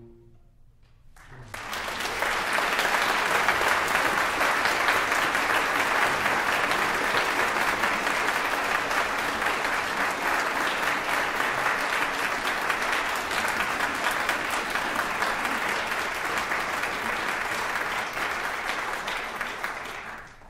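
Concert audience applauding, breaking out about a second in as the orchestra's final note fades, then holding steady.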